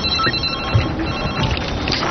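Electronic telephone ringing: a rapid, high trilling tone that comes in bursts and breaks off about a second in, over steady background noise.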